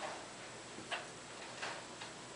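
Hairbrush strokes through long hair gathered into a ponytail: three short brushing swishes, a little under a second apart.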